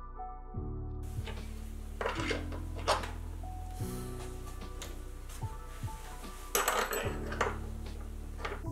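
Background music with a few metallic clinks and scrapes of small steel lathe parts being handled and fitted, bunched about two seconds in and again near seven seconds.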